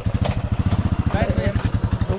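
Motorcycle engine idling: a steady, rapid, even low pulse.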